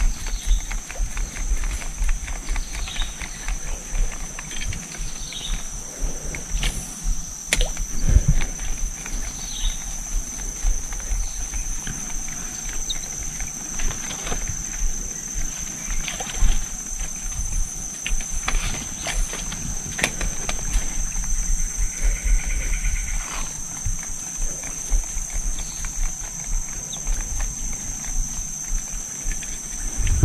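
Streamside forest ambience: a steady high-pitched insect drone throughout, with scattered bird calls and a few sharp clicks over a low rumble.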